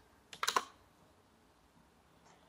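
Computer keyboard: a quick run of a few keystrokes about half a second in, finishing a typed command.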